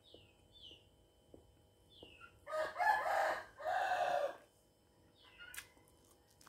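A rooster crowing once, about two and a half seconds in, in two drawn-out parts lasting about two seconds together. A few faint, high, falling chirps come before and after it.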